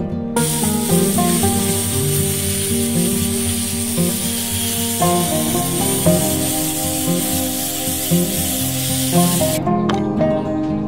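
Angle grinder fitted with a sanding pad running, a steady high hiss as a curved wooden piece is sanded against it, starting just after the beginning and cutting off sharply near the end. Acoustic guitar music plays underneath throughout.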